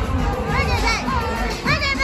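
Loud party music with a heavy bass beat, with high-pitched shouts and cheers from the crowd twice, about half a second in and near the end.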